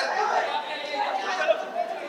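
Several people talking over one another, with a laugh at the start.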